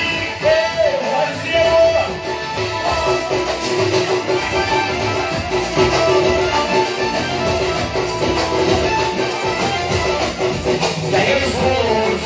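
Loud amplified live raï music: a male singer on a handheld microphone over amplified instruments, with a guitar-like melody line.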